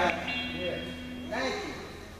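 A man preaching into a microphone over held instrumental notes, which end about halfway through while his voice trails off.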